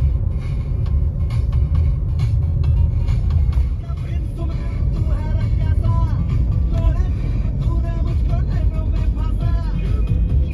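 Low steady rumble of a car driving, heard from inside the cabin, with music playing over it; a melodic line comes in about four seconds in.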